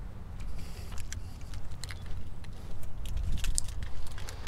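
Keys jangling and footsteps on asphalt, with scattered light clicks over a low rumble; the clicks and rumble grow a little louder near the end as the pickup's door is opened.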